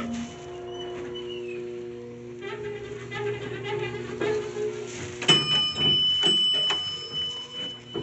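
Soft background music with sustained notes. About five seconds in there is a sudden click and then a steady high-pitched tone lasting about three seconds, as the elevator's door-close button is pressed.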